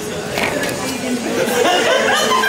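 Indistinct chatter of many people talking at once around a café, with people cackling in the background.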